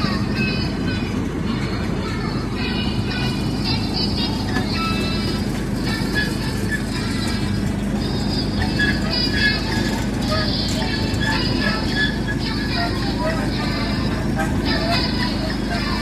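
Small sightseeing train running with a steady low rumble, with a voice and music over it.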